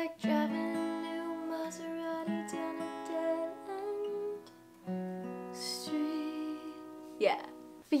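Capoed red Fender Sonoran steel-string acoustic guitar playing an F chord and then an A minor chord slowly, with notes picked one after another and left to ring. The sound dips briefly just before halfway, then the next chord is struck.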